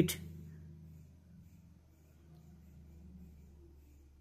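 Faint, steady low test tone from a KBOOM Bluetooth speaker played at full volume, part of a downward frequency sweep that passes from about 84 Hz to 69 Hz.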